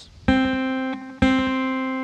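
Acoustic guitar's second (B) string, fretted at the first fret to sound a C, plucked downward twice with the thumb: two ringing notes of the same pitch about a second apart, each fading slowly.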